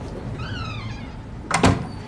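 A cabin door is pushed shut and slams, with a sharp double knock about one and a half seconds in.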